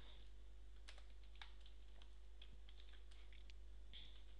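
Computer keyboard being typed on: faint, irregular keystroke clicks over a steady low electrical hum.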